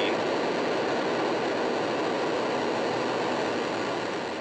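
Falcon 9 rocket's nine Merlin engines firing at liftoff, a steady, even rumbling noise of rocket exhaust as the vehicle climbs off the pad.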